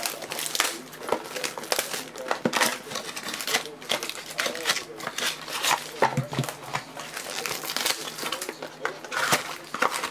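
Foil trading-card pack crinkling and a cardboard mini box being handled by hand: a dense, irregular run of crackles and rustles.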